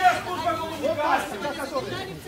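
Several people talking at once, their voices overlapping so that no words come through clearly.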